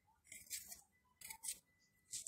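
Near silence, broken by a few faint, short hissing noises.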